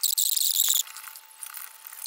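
Gloved hands handling a recessed light's metal junction box and its wires: a high-pitched scratchy rustle of glove fabric against metal and wire for about the first second, then much quieter handling.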